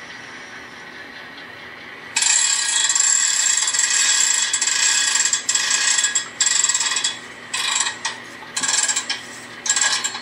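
Rapid ratcheting clicks of a freight-car handbrake being wound on, played as a model-railroad sound effect. One continuous run of about five seconds is followed by three short bursts.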